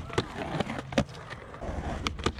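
Skateboard wheels rolling on concrete, with several sharp clacks of the board as the skater pops onto a skatepark ledge for a frontside smith grind; the loudest clack comes about a second in.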